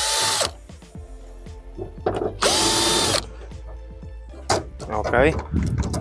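Drill-driver spinning in two short bursts about two and a half seconds apart, each with a steady whine that winds up and down, backing screws out of a socket housing on a van's metal side panel. Light clicks come between the bursts.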